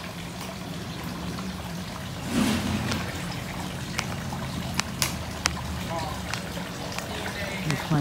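Water running steadily from a garden hose, with a few sharp clicks in the middle and brief faint voices.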